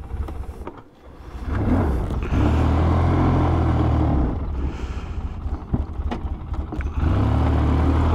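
Polaris Sportsman 700 Twin ATV's twin-cylinder engine pulling away, revving up about a second and a half in, easing off around the middle, then building again near the end. Two short knocks come about two-thirds of the way through.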